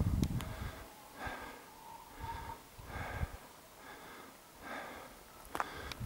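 A person breathing close to the microphone, a short breath roughly every second, after a brief low handling thump at the start.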